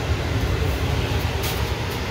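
A steady low rumble of running machinery, with a couple of brief rustling flicks near the end.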